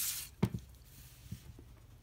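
Handling of a ruler and paper on a desk: a brief rustle at the start, a single sharp tap about half a second in, then quiet with a couple of faint small ticks.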